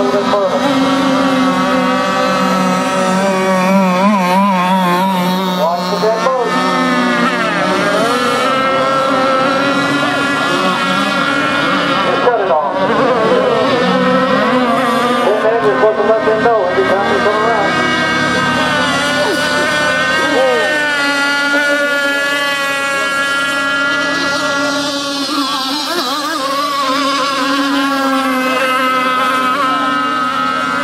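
Small two-stroke engine of a radio-controlled AC Lazer rigger race boat with a Quickdraw 25, running flat out across the water. Its pitch keeps rising and falling as the boat swings through the turns.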